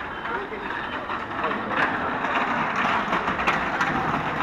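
Busy street ambience: indistinct chatter of passers-by over a steady wash of street noise, with scattered short clicks, growing louder about two seconds in.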